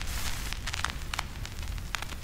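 Steady hiss and low rumble with scattered sharp crackles and clicks, like static.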